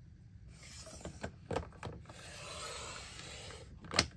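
Creative Memories paper trimmer cutting a thin strip of paper as its cutting head is pushed along the rail. A few clicks about a second in are followed by a steady scraping hiss that stops just before the end.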